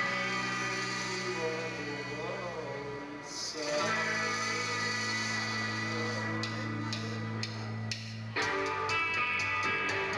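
Rock band playing live, with strummed electric guitars over bass holding sustained chords. The chord changes just before four seconds in and again a little past eight seconds.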